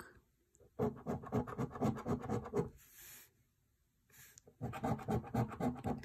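A coin scratching the scratch-off coating from a paper scratch card in quick, rapid strokes. It comes in two spells: one starting about a second in and lasting nearly two seconds, then, after a pause, another from about four and a half seconds.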